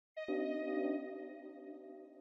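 Opening of a hip-hop beat: one sustained chord of steady tones that starts with a soft click just after the start, holds, and slowly fades.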